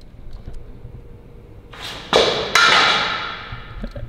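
A sword swishing: a loud rushing swish begins about halfway in, with a sharper edge partway through, then fades away over the next second or so.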